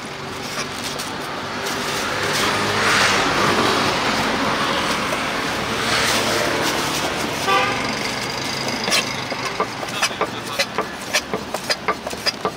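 A cleaver chops sundae on a wooden cutting board in sharp knocks. The knocks fall off while passing traffic swells twice, then come back as a quick steady run near the end. A short car-horn toot sounds about two-thirds of the way through.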